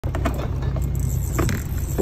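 Small boat's motor running with a steady low rumble, with a few light clicks and knocks from handling of the fishing gear.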